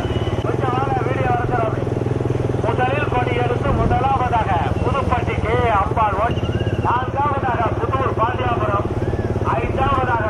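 Motorcycle engines running steadily, with a man's voice calling out over them in a rising-and-falling, sing-song way.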